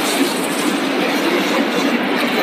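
Tortilla chip production line running, with a steady, dense mechanical rattle from the conveyor machinery and chips pouring off the belt.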